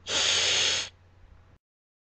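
A cat hissing once: one short, loud hiss lasting under a second, followed by a faint trailing noise.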